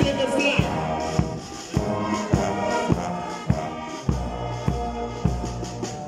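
Brass band of tubas, trombones and cornets playing a tune over a steady drum beat, a little under two beats a second. Deep bass notes are held through the second half.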